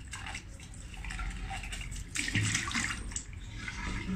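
Water splashing in a ceramic bathroom sink as a rubber enema bulb is rinsed and emptied, with a louder rush of water about halfway through.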